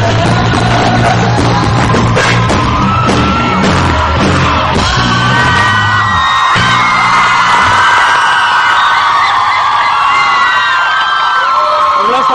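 Rock band playing live with electric guitar, bass and drums, stopping about six and a half seconds in. A large crowd yells and whoops over the last part.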